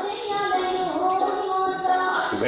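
A high-pitched voice singing a slow melody in long held notes that bend and waver in pitch.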